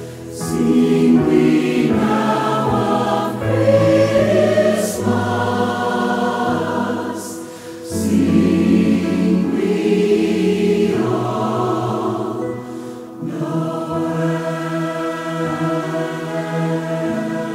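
Choir singing in long sustained phrases over instrumental accompaniment, with short breaks between phrases about halfway through and again past three-quarters of the way.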